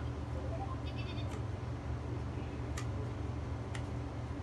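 A few faint plastic clicks as a toddler handles a toy phone, three in all, over a steady low hum, with a faint short electronic tone from the toy about a second in.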